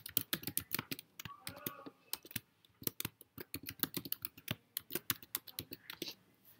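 Rapid keystrokes on a computer keyboard as a user name and password are typed into a login prompt, with a brief pause about a second and a half in.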